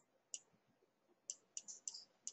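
Faint light clicks of a stylus tapping and scraping on a pen tablet while writing: one tick about a third of a second in, then a quick run of ticks in the last second.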